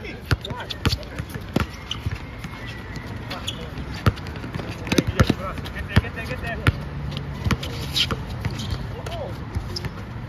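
Basketball being dribbled on an outdoor hard court, a run of irregularly spaced bounces, with players' voices in the background.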